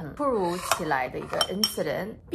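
Metal fork and knife clinking a few times against a ceramic bowl while eating, each clink ringing briefly, with a woman's voice underneath.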